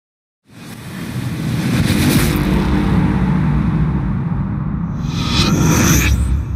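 Sound effect for an animated logo intro: a deep rumble swells in after about half a second, with a hissing whoosh over it, and a brighter whoosh sweeps through near the end.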